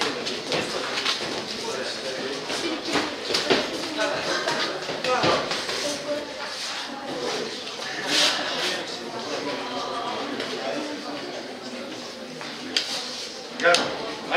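Spectators and coaches talking and calling out around a boxing ring, with a few short sharp knocks, the loudest about eight seconds in and near the end.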